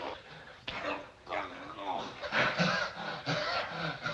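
Men groaning and grunting with strain in a wrestling bear hug: a run of separate drawn-out groans that bend in pitch.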